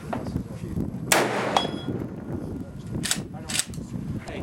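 A single shot from an Ithaca Deerslayer III 12-gauge slug gun about a second in, ringing out, with a short metallic ding just after it. Near the end come two sharp clacks about half a second apart.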